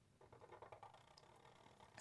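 Near silence, with faint rubbing of felt-tip markers drawing on paper.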